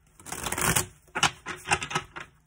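Cards from a reading deck being handled and shuffled by hand: a rustling shuffle lasting about half a second, then a few quick, sharp snaps of cards.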